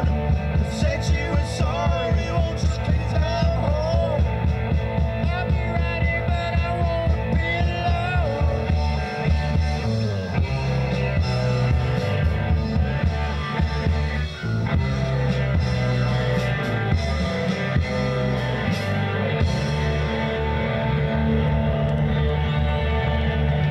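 Rock band playing live: electric guitars, electric bass and a drum kit, with a steady beat through the first half and a brief dip in level a little past the middle.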